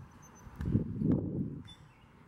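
Wind rushing over the microphone of a camera swinging back and forth on a playground swing, a low rumbling gust that swells and fades once, loudest around the middle.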